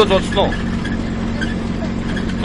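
Steady engine and road hum heard inside a vehicle's cabin. A small child's high voice is heard briefly at the start.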